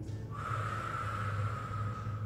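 A person's long exhaled breath, lasting about two seconds, with a faint steady whistling tone in it, over a steady low hum.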